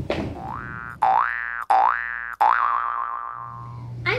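A cartoon-style transition sound effect: three quick rising, whistle-like glides, each cut off sharply, then one long falling glide that fades away.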